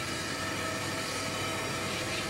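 Electric glass-working machine running steadily: an even hum and noise with several steady whining tones held throughout.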